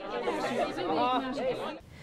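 A group of teenagers chattering and calling out all at once, many voices overlapping, cutting off shortly before the end.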